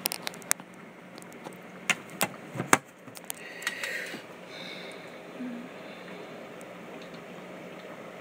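Handling noise: a handful of sharp clicks and knocks in the first three seconds, the loudest near the three-second mark, then a short rustle and faint steady room noise.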